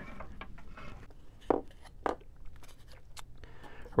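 Light handling noise from a balsa-wood model-plane fuselage and the plastic control-rod tubing inside it: scattered soft taps, clicks and rubbing, with a few sharper clicks about a second and a half in, at two seconds and near three seconds.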